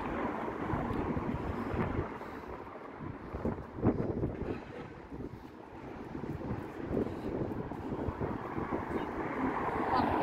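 Street traffic: cars passing on the road, their noise fading over the first two seconds and building again near the end, with wind on the microphone. A short knock stands out about four seconds in.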